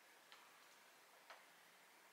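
Near silence with two faint clicks about a second apart: small flavouring dropper bottles being set down on a table.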